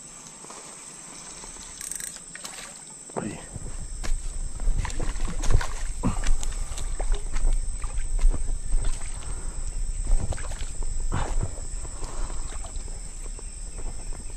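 Steady high-pitched chirring of crickets, with the handheld camera rustling, bumping and knocking as it is moved about from about three seconds in.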